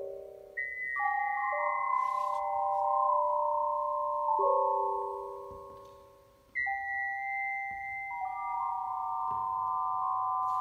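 Electronic keyboard playing pure, bell-like sustained tones in overlapping chords, with new chords entering every second or two. Near the middle the sound fades almost away, then a new chord comes in sharply.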